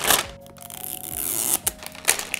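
Thin plastic shrink-wrap crinkling and tearing as it is peeled off a toy tube: a few sharp crackles, then a longer hissing rip.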